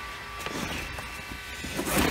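Fabric curtain rustling as it is handled and pushed aside, with handling rumble, growing louder near the end.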